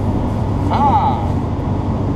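Datsun 810 Maxima's engine running at low speed, heard from inside the cabin as a steady low rumble. A short pitched sound rises and falls just under a second in.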